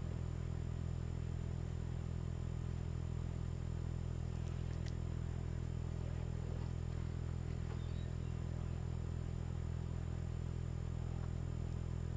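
A steady low hum with faint background noise, unchanging throughout, and one faint click about five seconds in.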